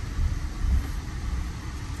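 Low, steady road and engine rumble of a car being driven, heard from inside the cabin.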